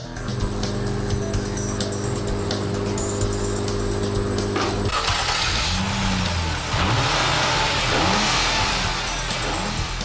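Nissan VR38DETT twin-turbo V6 running on an engine test stand during its performance check: a steady idle for about five seconds, then revved up and down a few times.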